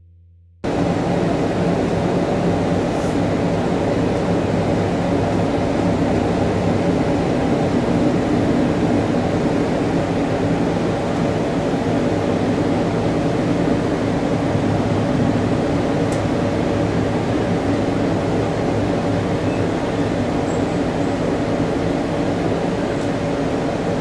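Steady rumble and engine drone inside a moving train carriage, cutting in suddenly about half a second in.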